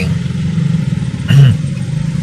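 Street traffic heard from inside a car at an intersection: a steady low hum of idling and moving motorcycles and car engines. A short loud burst about one and a half seconds in is the loudest moment.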